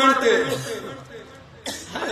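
A man's voice at a microphone: a drawn-out vowel falling away and fading over the first second, then a short lull and a sudden new vocal outburst near the end.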